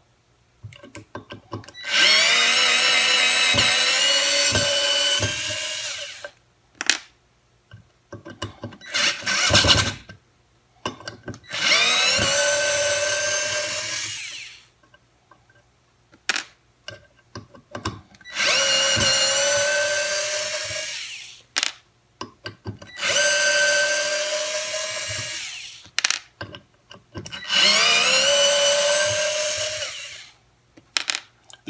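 WORX WX240 4V cordless screwdriver running in reverse, backing screws out of a wooden board. It makes five runs of about three to four seconds each, its whine climbing as each run starts. Short clicks and knocks come between the runs.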